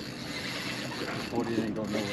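A man's short wordless voice sound about halfway through, over a steady hiss.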